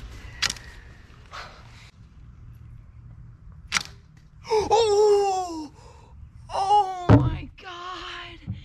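Homemade bamboo longbow being shot: a sharp snap of the string near the start and another just before halfway. Then a long vocal groan that slides down in pitch, and a second one a couple of seconds later with a thump.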